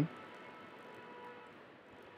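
Quiet pause: faint steady background hiss with a faint hum.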